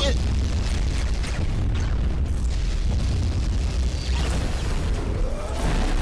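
Explosion sound effect from an animated video's soundtrack: a deep, steady rumble with a hiss over it.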